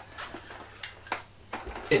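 Plastic pump head of an Eheim Pro3 canister filter being handled and turned over: a few faint clicks and knocks, then a low thump near the end.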